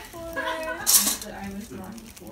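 A brief, sharp rattle of plastic Lego bricks in a plastic bag about a second in.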